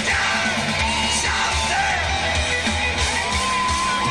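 Live rock band playing: a male lead singer over electric guitar and drums, ending on a note held through the last second.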